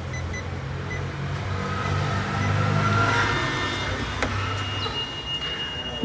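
A motor vehicle running close by in street traffic, a steady low hum that grows louder about halfway through and then eases off as it passes.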